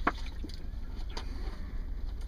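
A sharp knock just at the start and two fainter clicks later, over a steady low rumble.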